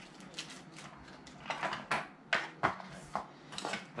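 Small boxed packaging being handled on a desktop: a string of light clicks, taps and rustles, with a few sharper clicks past the middle.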